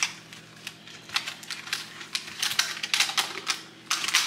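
Plastic cling wrap and a clear plastic cake container being handled: irregular light clicks and crinkles, a few a second, starting about a second in.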